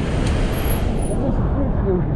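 Steady low outdoor rumble with faint voices talking in the background.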